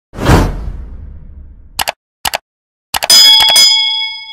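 Edited subscribe-animation sound effects: a deep hit that fades over about a second, two quick double clicks like button taps, then about three seconds in a bright bell ding that rings on and fades.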